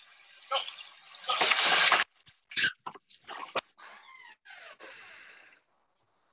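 Outdoor audio of a phone video played through a Zoom screen share: a loud burst of rushing noise, then a few short sharp sounds and two longer calls, cutting off suddenly near the end.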